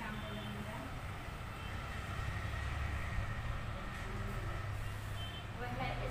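A low rumble that swells in the middle, with a thin steady tone above it for a second or so, under a woman's faint talking.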